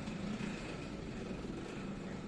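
Steady background noise with a faint low hum, without distinct events.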